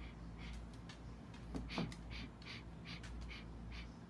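A man sniffing the cologne on his wrist in a rapid series of short sniffs, about three a second.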